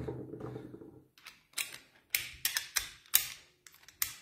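A quick series of sharp metallic clicks and taps as chrome sockets and an extension bar are worked onto a torque wrench's square drive, the extension's detent being checked for a clean click-in.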